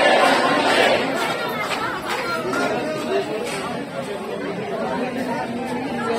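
Crowd chatter: many people talking at once, loudest in about the first second, then a steady hubbub.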